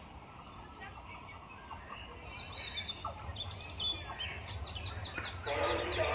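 A small bird calling in a quick series of short, high, downward-sliding chirps in the second half. Under it a low rumble grows steadily, from a train approaching in the distance.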